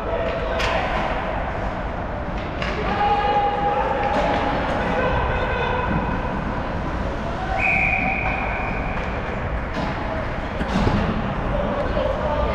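Ice hockey game in an arena: sharp knocks of sticks and puck against the boards, a louder thump near the end, and sustained shouts and calls from players and onlookers.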